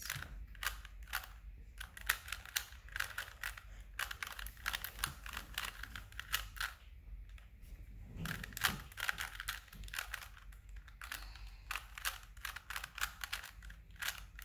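A 3x3 Rubik's cube's plastic layers being turned quickly by hand, giving a rapid, irregular string of clicks and clacks, with a short pause about seven seconds in.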